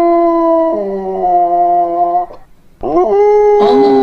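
A dog howling in long drawn-out notes. It breaks off a little after two seconds, then starts again about three seconds in with a rising howl that settles into another long held note.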